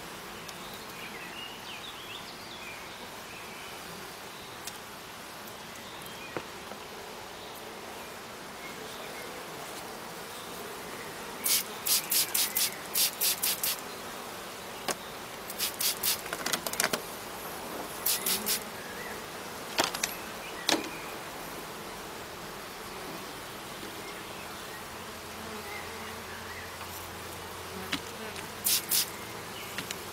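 Honeybees buzzing steadily over an open hive. From about halfway through, a hand pump spray bottle misting water onto the bees cuts in with runs of quick squirts, several in a row. The squirts are the loudest sounds, and a last pair comes near the end.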